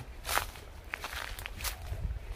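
A person's footsteps on outdoor ground: four or so short, crisp steps about half a second apart, over a low steady rumble.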